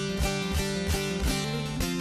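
Bağlama (long-necked Turkish saz) playing an instrumental passage of a folk tune, its strings strummed and plucked in quick, even strokes.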